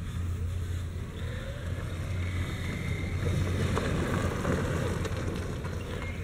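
36-volt electric EZ-GO golf cart driving across grass, a steady low rumble with a faint rising whine about a second in.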